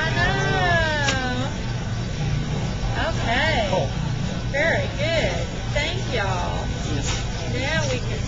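Mostly people's voices: a drawn-out call in the first second or so, then short spoken bits and exclamations, over a steady low hum of room noise.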